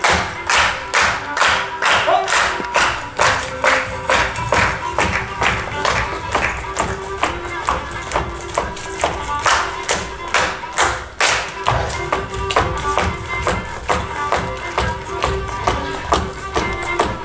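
Live folk dance music: a melody held on steady pitched notes over a sharp, even beat of about three taps or stamps a second from the dancers' feet on the stage.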